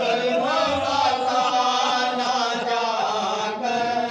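Men's voices chanting a soz, the unaccompanied Urdu elegy of Shia mourning, held on long drawn-out notes that bend slowly in pitch.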